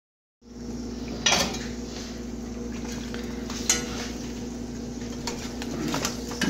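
Eggs frying in a skillet: a faint steady sizzle under a steady hum, broken by two sharp clinks of a utensil against the pan, about a second in and again near four seconds.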